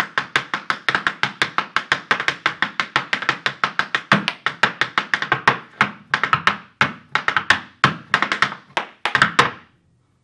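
Irish dance hard shoes beating out a fast, dense rhythm of toe and heel strikes on a wooden portable dance floor, several beats a second. The beats stop shortly before the end.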